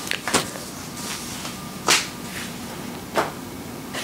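Three short, soft knocks or rustles from a person moving about and stepping back, the middle one the loudest, over quiet room tone.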